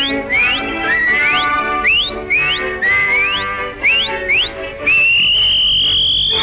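Cartoon orchestral score with a string of short upward whistle glides, roughly two a second. About five seconds in comes one long held whistle that climbs slowly in pitch.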